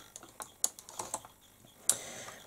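Light, irregular clicks and taps of makeup brushes and a palette being handled at close range, about seven in two seconds, the loudest near the end.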